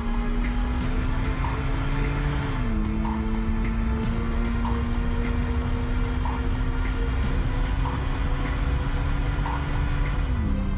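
Film background score: a sustained low synth drone that steps down in pitch about two and a half seconds in, over a steady ticking beat with a short blip repeating a little more than once a second.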